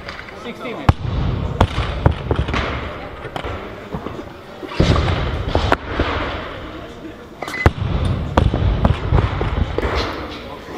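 Barbells and bumper plates knocking and clanging on lifting platforms around a busy weightlifting training hall, with several sharp impacts at irregular moments over the hall's murmur of voices.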